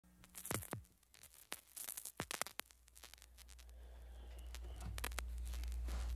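Scattered sharp clicks and crinkly scratches close to the microphone in the first few seconds. Then a low hum grows steadily louder toward the end.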